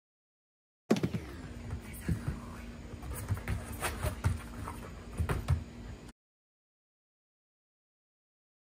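Irregular knocks and thumps of heavy cardboard kennel boxes and a plastic dog crate being handled, over a faint steady hum. The sound cuts in suddenly about a second in and cuts off suddenly about six seconds in.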